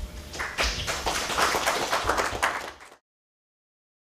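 Audience applauding, a dense patter of many hands clapping that starts about half a second in, then fades and cuts off to silence about three seconds in.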